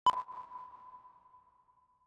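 Film countdown-leader sync beep: a single sudden high ping that rings on one pitch and fades away over about two seconds.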